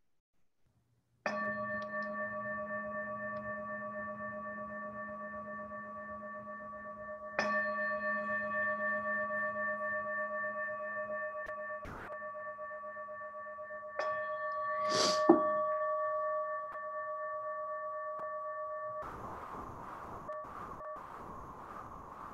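A meditation bell struck three times, about six seconds apart, marking the end of a sitting meditation. Each strike rings on several steady tones that slowly fade, with a brief rustle just after the third strike. The ringing cuts off abruptly a few seconds before the end, leaving a faint hiss.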